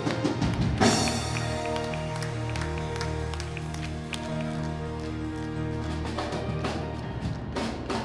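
Church band playing out the end of a choir song: held keyboard chords with scattered drum and cymbal hits.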